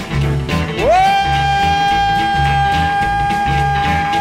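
Chicago blues band recording playing a fast boogie instrumental break: bass and drums keep a repeating shuffle pattern while, about a second in, a lead note slides up sharply and is held on one steady pitch, typical of an electric guitar sustaining a bent note.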